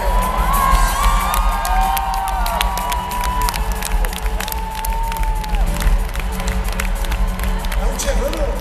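Large concert crowd cheering, with long high-pitched screams rising above the noise and scattered clapping, over a steady low rumble.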